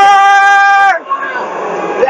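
A man's voice holds one long, high sung note, close to the microphone. The note stops about a second in, followed by a quieter jumble of voices.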